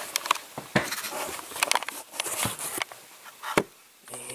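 Small objects on a cluttered workbench clicking, knocking and rustling as things are handled, with a sharper knock near the end.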